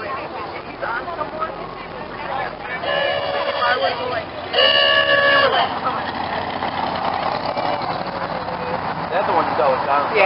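Car horn honked twice, two steady blasts of about a second each, under a second apart, over passing traffic.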